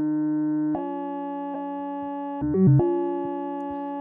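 Buchla-format modular synthesizer patch with a 1979 Digital Resonator in modal resonator mode, holding a sustained tone rich in overtones. It steps to a new pitch about three-quarters of a second in, then halfway through gives a brief, louder flurry of quick pitch changes before settling on a held note again. The pitch steps come from sequenced pitch voltage.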